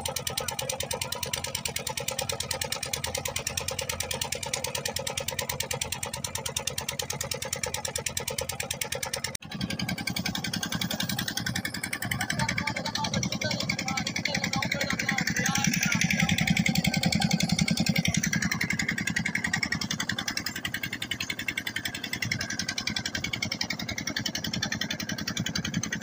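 Engine of a wooden river ferry boat running steadily with a rapid, even pulse. It breaks off briefly about nine seconds in, then runs on heavier and deeper as the boat moves out onto the river.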